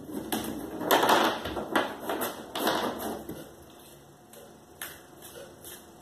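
A deck of tarot cards being shuffled by hand: a fast run of card flicks and clicks against each other and the wooden tabletop, busiest for the first three seconds, then only a few scattered clicks.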